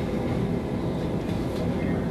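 Steady low rumble of room background noise, with no clear speech.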